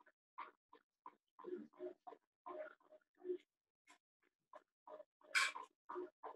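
A marker squeaking and scratching on a whiteboard in a run of short strokes while numbers are written, with a longer, louder stroke about five seconds in.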